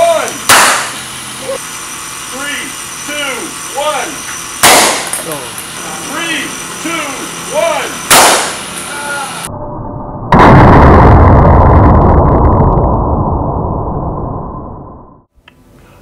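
Vacuum-powered PVC ping-pong ball cannon firing three times, each shot a sharp loud bang as the ball bursts through the tape seal on the muzzle, about four seconds apart. This is followed by a long, loud low rumble that fades out over about five seconds.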